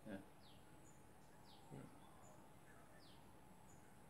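Near silence with faint birds chirping outside: a few short, high, downward-sliding calls spread through the quiet.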